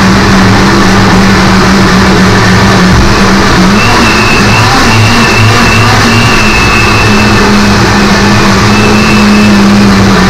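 Electric countertop blender running steadily and loudly, its motor chopping coconut flesh into coconut milk, with a high whine that comes and goes over a low hum.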